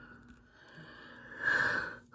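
A man's short breath through the nose near the end, one brief puff of air against faint room noise.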